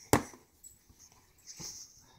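A plastic sippy cup set down on a plastic high-chair tray: one sharp knock just after the start, followed by a fainter, brief sound near the end.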